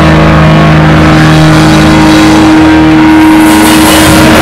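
Live rock band playing very loud, with electric guitar and bass holding one sustained, heavily distorted low chord; cymbals come back in near the end.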